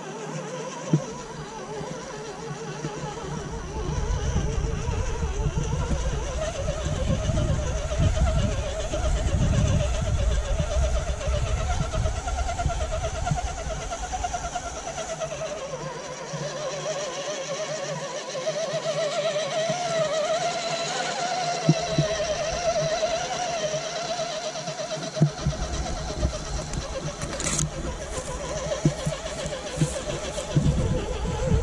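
Radio-controlled eight-wheel flatbed truck's motor and gears whining as it drives through loose sand, the pitch rising and falling with the throttle. Low rumble of wind on the microphone comes and goes, with a few light clicks.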